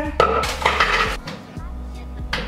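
Plastic food container clattering as it is handled and set down on a countertop, one short noisy burst lasting under a second, about a quarter second in.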